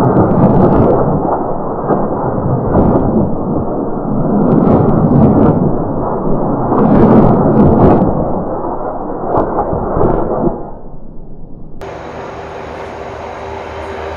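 Rolling rumble of a salvo of 70 mm unguided rockets from Tiger attack helicopters striking a distant target, swelling about three times, with short sharp cracks over it. It dies away about ten seconds in, and a quieter, steady helicopter drone follows.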